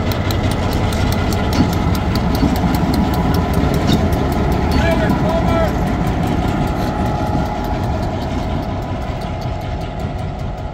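Western Pacific 1503, an EMD MP15DC diesel switcher, running slowly past close by, its 12-cylinder two-stroke diesel engine running steadily with a quick, regular pulse. The sound eases a little over the last few seconds as the locomotive moves away, and a voice calls out briefly about halfway through.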